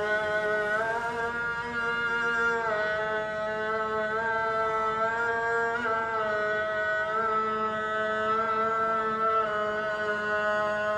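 A man's voice chanting the Islamic call to prayer in long, drawn-out held notes, each sliding to a new pitch every two to three seconds.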